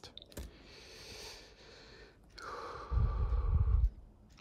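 A person breathing out near the microphone: a soft breathy exhale, then a heavier one about two and a half seconds in whose air hits the microphone as a loud low rumble for about a second.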